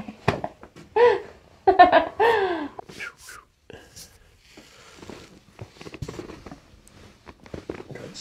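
Laughter in two bursts in the first three seconds, after a chiropractic back adjustment. Then soft rustling, shifting and small clicks as the patient is turned onto her side on the padded treatment table.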